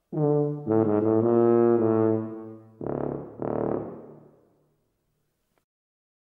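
Tuba playing a short low phrase of held notes, then a second, briefer phrase that dies away a little past the middle.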